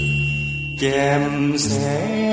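A Thai song: held instrumental accompaniment, then a male singer's voice coming in about a second in, holding notes with a slow vibrato.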